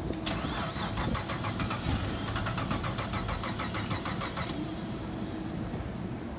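Drift car's engine being started: rapid, rhythmic starter cranking for about four seconds that then stops.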